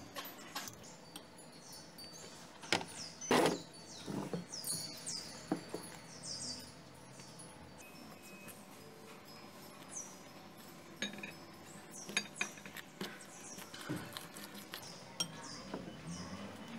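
Metal fork and spoon clinking and scraping against a glass mixing bowl while flour batter is stirred, in scattered sharp clicks, loudest about three seconds in. Birds chirp faintly and repeatedly in the background.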